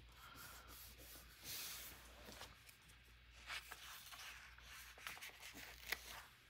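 Near silence with faint rubbing and paper handling: fingers pressing a sticker flat onto a paper journal page, with a few light taps.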